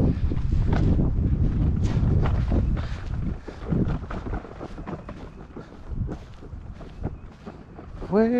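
Wind rumbling on the microphone, heavy for about the first three seconds and then easing off, with scattered soft thuds of footsteps on grass.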